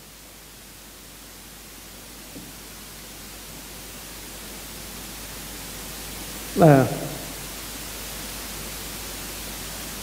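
Steady hiss of the recording's background noise, slowly growing louder, with one short man's vocal sound falling in pitch about two-thirds of the way through.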